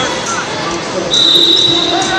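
A referee's whistle blows one steady high note for about a second, starting about a second in, over the voices and babble of a large hall.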